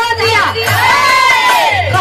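A woman singing birha, a Bhojpuri folk song, through a loud public-address system. Near the middle she holds one long, ornamented note that rises and falls back.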